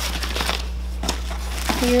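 Paper crinkling and rustling as it is handled, in irregular crackles.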